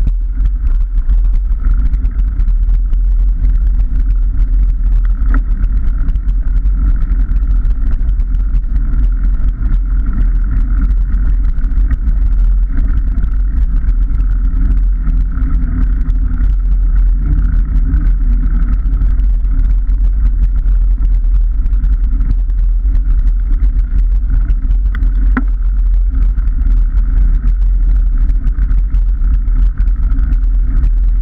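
Steady wind buffeting and rolling rumble on a handlebar-mounted camera as a bike rides over rough track and broken tarmac, with two sharp knocks, about five seconds in and near the end.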